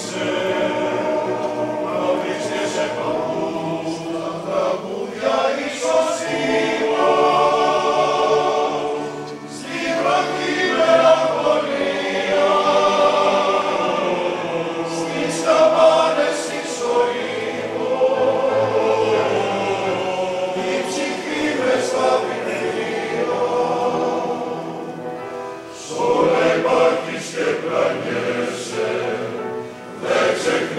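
Male-voice choir singing in parts, with short breaks between phrases about ten and twenty-five seconds in.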